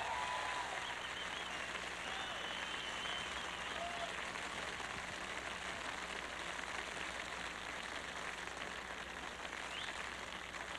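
Studio concert audience applauding steadily after a song, with a few shouts and a whistle in the first few seconds.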